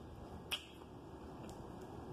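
Mouth chewing a crisp Jonagold apple: one sharp click about half a second in, then two faint clicks later, over a steady hiss.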